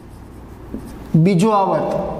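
Felt-tip marker scratching on a whiteboard as a word is written, faint, for about the first second.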